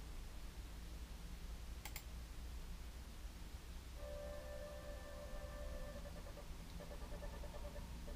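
A single click about two seconds in, then a faint held synth chord from iZotope Iris tracks starts about four seconds in. After a couple of seconds the chord turns fainter and broken up as the 2012 Mac mini's CPU hits 100% and playback all but stalls.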